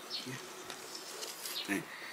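An insect buzzing faintly.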